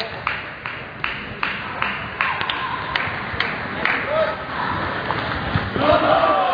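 Table tennis rally: the celluloid ball clicking sharply off bats and table about two to three times a second, over a background of voices in the hall.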